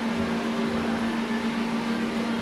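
Steady hum of an electric motor with an even rush of air, as from a fan or blower, running unchanged throughout.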